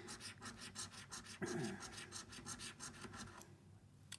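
A coin scraping the silver coating off a paper scratchcard in quick, repeated strokes, several a second, stopping shortly before the end.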